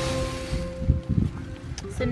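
Acoustic guitar background music ending, its last chord ringing out and fading over the first second and a half, followed by wind on the microphone and some rustling.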